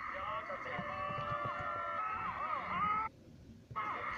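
Voices from the playing compilation video, pitched and gliding, over a steady held tone; the playback cuts out suddenly for under a second about three seconds in.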